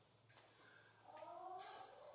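Near silence with faint room tone. About a second in comes a faint, drawn-out pitched call that rises in pitch and lasts under a second.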